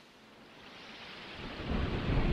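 A steady rain-like hiss with a deep rumble building beneath it, growing steadily louder toward the end.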